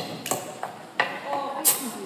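About four sharp hand slaps and claps spread over two seconds, from two people doing a choreographed handshake in front of a hushed crowd, with faint voices murmuring underneath.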